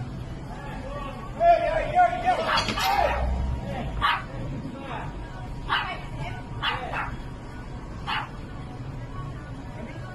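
A dog barking several times in short sharp yaps, with people's voices and a steady low street hum.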